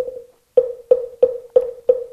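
Moktak (Korean Buddhist wooden fish) struck with a mallet: one hollow knock, a short pause, then an even run of knocks about three a second, all at the same pitch, keeping time for mantra chanting.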